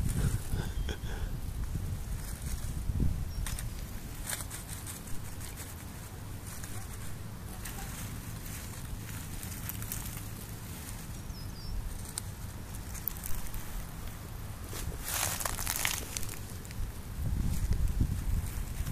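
Rustling and crackling of dry grass and nest material as a hand parts the cover of a rabbit nest, with a steady low rumble underneath. The rustling is loudest for about a second near the end.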